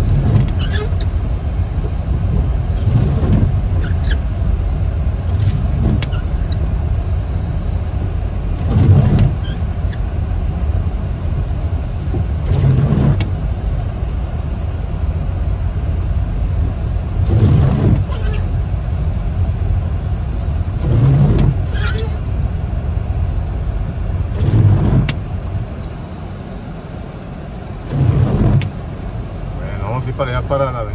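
Inside a car driving slowly along a flooded street in the rain: a steady engine and road rumble with the hiss of tyres in water, and a short swish every three to four seconds. The level dips for a couple of seconds near the end.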